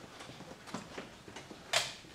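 Room tone with a few faint, scattered clicks and knocks, and one louder, short rustle-like burst near the end.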